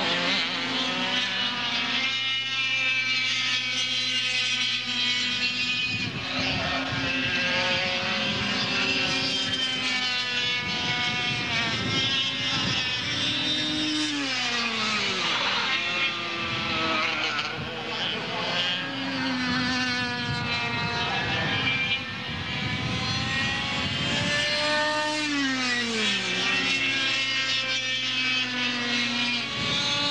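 Several two-stroke, air-cooled kart engines racing, their high-pitched notes rising and falling as they rev and pass by, often overlapping.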